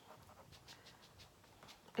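Quiet room with a few faint, short breaths.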